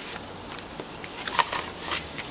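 Paper and plastic rustling as a card and cellophane-sleeved sticker sheets are pulled out of a paper envelope, with a few short crinkles about a second in and near the end.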